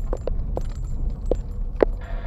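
Car cabin on a rough unpaved road: a steady low road rumble with several short, sharp knocks and rattles at uneven gaps as the car bumps over the potholed surface.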